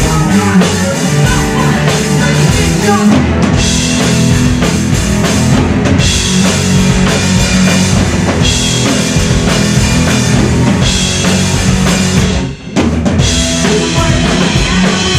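Rock band playing an instrumental passage live, with electric guitar, bass guitar and a drum kit pounding out a steady beat. Near the end the band stops for a split second, then comes straight back in.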